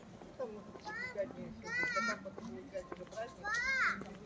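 Young children's high-pitched shouts and squeals while playing. There are short calls about a second in and at two seconds, then a louder, longer squeal near the end.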